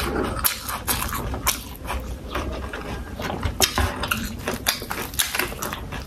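Close-miked chewing and lip-smacking of fried quail: a run of irregular short clicks and smacks from the mouth.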